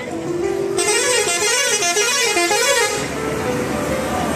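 A loud horn sounds a warbling, up-and-down tune for about two seconds, starting about a second in and cutting off sharply, over background music.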